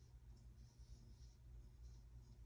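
Near silence: room tone with a faint low hum and a soft, uneven hiss.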